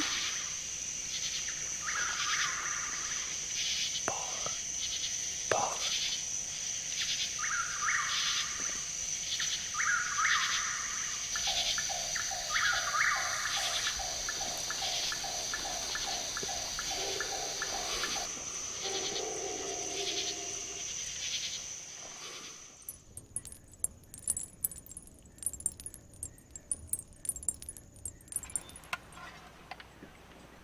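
Night-time outdoor ambience: a steady, high-pitched insect drone with chirping calls repeating about once a second, some in fast trills. About three-quarters of the way through it stops, leaving faint scattered clicks and crackle.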